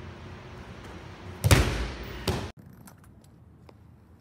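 A loud thud of a hit into a large padded strike shield, echoing around the gym, followed by a second, lighter thud; the sound then cuts off suddenly to a much quieter background.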